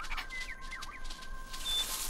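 Soft background music with a few faint, brief high chirps from a small cartoon bird, and a rustle of leaves building near the end.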